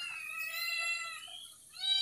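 One long, high-pitched cry lasting about a second and a half, falling slightly in pitch, with a second cry starting near the end.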